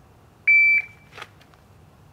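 Shot timer sounding its start signal: one short, high, steady beep about half a second in, the cue for the shooter to draw from the holster and fire. A faint click follows about a second in.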